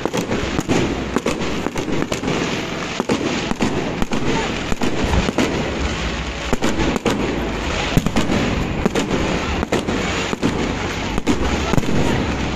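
Many fireworks and firecrackers going off at once: a dense, continuous crackle with frequent sharp bangs, several a second.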